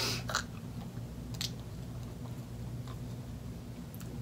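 Hard candy being bitten and chewed, with a few short crunches in the first half second and another about a second and a half in, over a low steady hum.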